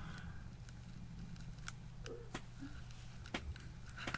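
A few faint, scattered clicks and taps over a low steady hum: quiet handling noise as the foam glider wing and its parts are moved about on the workbench.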